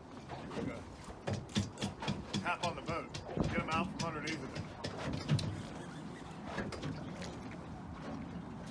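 Indistinct voices, loudest in the first half, with scattered clicks and knocks.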